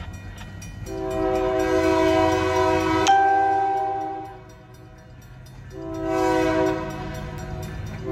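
Freight train's locomotive horn sounding two long blasts for a grade crossing. The first blast lasts over three seconds and its tone shifts partway through; the second begins about a second and a half after the first ends. A steady low engine rumble runs beneath both.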